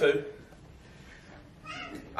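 A man's voice ends a drawn-out word with falling pitch, then a pause of quiet room tone, with a faint voice sound just before the end.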